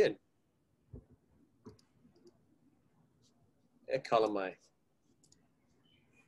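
A few sharp computer mouse clicks, two of them clear about a second apart, then fainter ticks, as a screen share is set up on a video call. A short spoken "eh" near the end is louder than the clicks.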